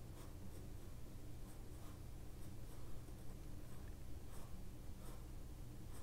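Graphite pencil sketching on sketchbook paper: faint, short scratchy strokes at an uneven pace, roughly two a second.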